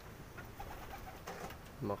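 A bird calling faintly: a short run of soft, low notes in the first second. A man's voice begins right at the end.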